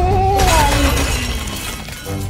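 A glass candy jar crashes onto the floor about half a second in, with a shattering clatter as it lands and wrapped candies scatter, fading out over the following second.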